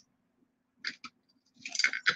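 Small costume jewelry being handled and set down: two light clicks a little under a second in, then a short flurry of clicks and clinks near the end.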